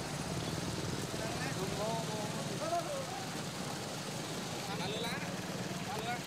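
Street sound: a vehicle engine running steadily under the voices of people talking.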